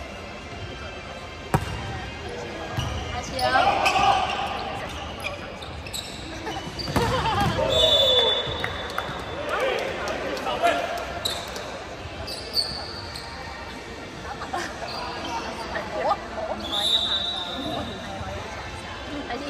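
Indoor volleyball rally: a sharp hand strike on the ball about a second and a half in as it is served, then more ball hits, players' shouts and short high squeaks, all echoing in a large hall.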